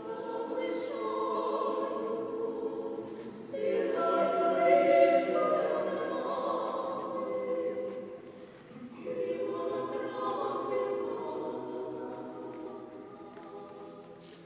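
Small mixed vocal ensemble, five women and one man, singing a cappella sacred choral music in sustained chords. The singing falls into three phrases with brief breaks about three and a half and nine seconds in, and is loudest in the middle phrase.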